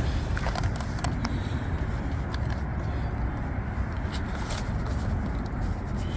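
Steady low outdoor rumble, with a few light clicks as a phone is pressed into the spring clamp of a drone's remote controller.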